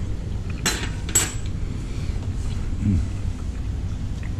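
Two light metallic clinks about half a second apart as a fork is set down, metal on a plate or hard countertop, followed by an appreciative "hmm" while tasting.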